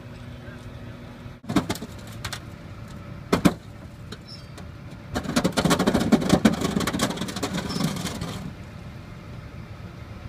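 Tow truck's engine idling steadily, broken by a few sharp metallic clanks and, in the middle, several seconds of louder clattering and knocking.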